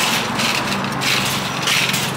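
Steady low engine hum with a rushing noise over it that swells and fades.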